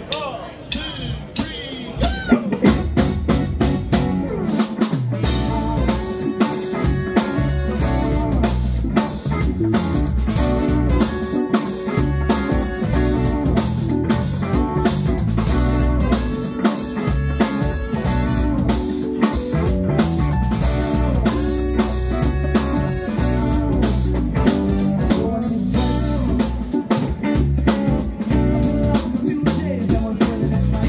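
A live funk band playing: drum kit, bass and electric guitar, and electric keyboard. A quieter opening gives way, about two seconds in, to the full band playing a steady beat.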